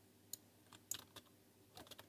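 About half a dozen faint computer keyboard keystrokes, short clicks spread over near silence.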